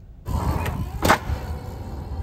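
Outdoor sound that comes in suddenly just after the start: a fluctuating low rumble, with a faint click and then a sharp crack about a second in.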